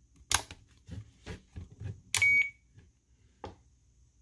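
FrSky Taranis Q X7 radio transmitter being handled on start-up as its switch warning is cleared: a series of sharp clicks, with one short beep from the radio about two seconds in.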